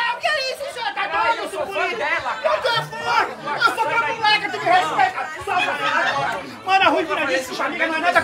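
Several people talking over one another: overlapping chatter of men's and women's voices.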